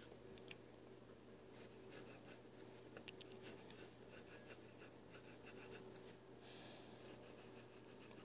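Faint scratching of a yellow wooden pencil drawing on paper: short runs of strokes with pauses between them, over a low steady hum.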